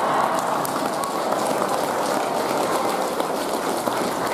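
An audience applauding: a steady patter of many hands clapping, with some voices underneath.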